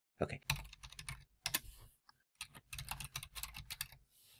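Typing on a computer keyboard: two quick runs of keystrokes with a short pause between them, about halfway through.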